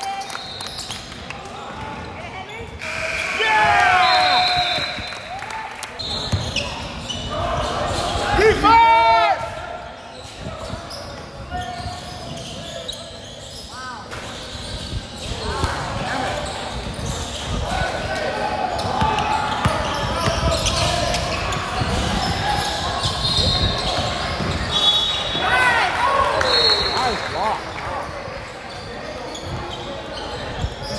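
Live basketball play in a reverberant gym: a ball bouncing on a hardwood floor and sneakers squeaking sharply on the court, most loudly about 3 to 4 seconds in and again around 9 seconds, with players' voices and shouts mixed in.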